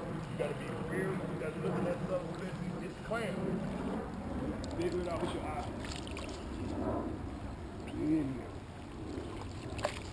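Shallow creek water sloshing and trickling as someone wades and moves a dip net through it, with faint, indistinct voices now and then.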